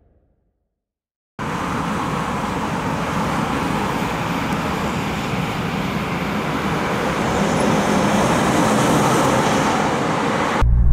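Shinkansen bullet train running past at a distance: after about a second and a half of silence, a steady rushing noise starts abruptly and grows slightly louder toward the end.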